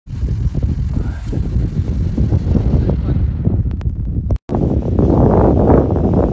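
Wind buffeting a phone's microphone: a loud, uneven low rumble. It cuts out for an instant a little over four seconds in, then carries on.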